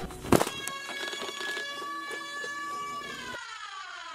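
A short sharp click, then a buzzy held tone with many overtones that stays level for about two and a half seconds and then slides steadily down in pitch: an edited-in electronic sound effect.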